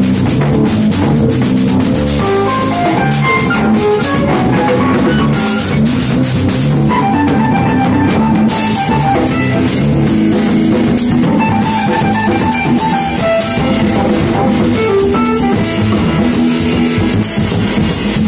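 A live rock band playing loudly and steadily, with a drum kit and guitar.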